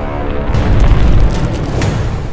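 Cinematic intro sting for a logo reveal: loud dramatic music with a deep boom swelling about half a second in, and sharp hits at the start of the boom and near the end.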